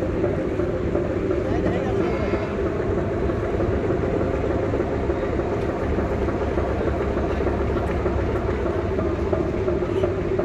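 Steady drone of ferry diesel engines running at a river ferry terminal, with indistinct voices in the background.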